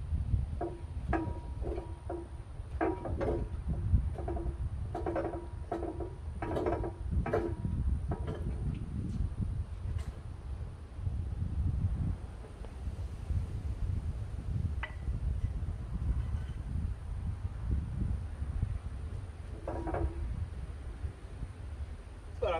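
Steel column of a Magnum XL two-post car lift creaking and squealing as it is rocked on its base, a run of short pitched squeaks over the first nine seconds or so and one more near the end. There are a couple of sharp clicks in between, over a steady low rumble.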